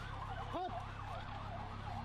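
Emergency-vehicle sirens yelping, several overlapping quick up-and-down sweeps, over the low rumble of a crowded street.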